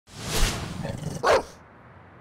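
A dog's bark used as a sound effect in a short logo sting: a loud swell of sound, then one sharp bark a little over a second in.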